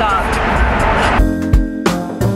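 Loud wind and road noise inside a moving car with the windows open, with a brief shout at the start. About a second in it cuts to background music with a steady beat.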